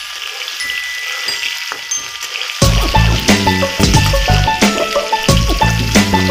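Rohu fish pieces sizzling as they fry in oil in a kadai, heard alone at first. About two and a half seconds in, loud background music with a steady beat comes in over the sizzle.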